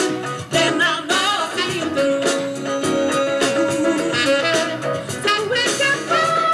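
Live jazz-fusion tune: a vocal group singing over electric keyboard, saxophone and percussion, with sung lines that slide and bend and some long held notes.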